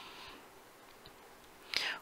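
A pause in a lecturer's narration: faint hiss of the recording, then an audible intake of breath near the end, just before he speaks again.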